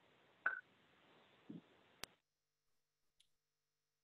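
Near silence: a faint microphone hiss with a couple of soft small noises, then a single sharp click about two seconds in, after which the line goes dead silent.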